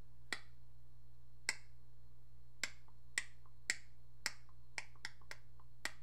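Fingers snapping about ten times at an uneven pace, over a steady low hum.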